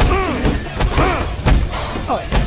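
Repeated heavy thumps of a person striking and kicking a wall and door, about two a second, with short vocal cries between the blows.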